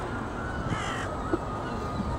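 A bird gives one short call a little under a second in, over a steady low rush of outdoor background noise, with a brief knock shortly after the call.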